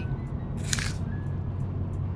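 Background music over a steady low car-cabin road rumble, with a short bite into a soft cheese bread about a second in.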